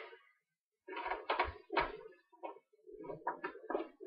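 Irregular soft knocks and thuds of kitchen handling as marinated pork chops are lifted out of a plastic bowl and set down in a tray, the pieces and containers bumping. The knocks come in a cluster about a second in and another near the end.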